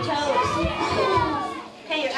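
Several young children's voices talking and calling out at once, high-pitched and overlapping, with a few soft low thumps under them; the voices dip briefly near the end.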